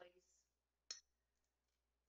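Quiet room with a single short, sharp click about a second in.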